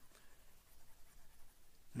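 Faint scratching of a stylus rubbing across a pen tablet's surface while erasing on a digital whiteboard.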